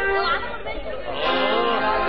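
Several voices talking at once over background music.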